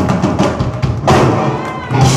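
Drum kit played on its own: a run of fast strokes across the drums, then a loud hit about a second in with a cymbal ringing on after it.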